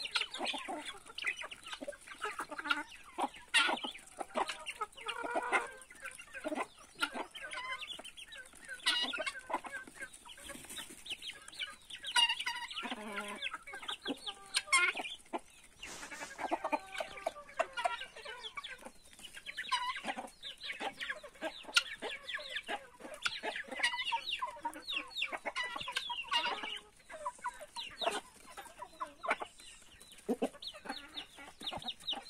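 Flock of chickens clucking while they peck at scattered corn: many short calls overlapping, with no pause.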